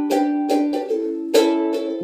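Ukulele strumming chords, several down-and-up strokes with the strings ringing between them, played without singing.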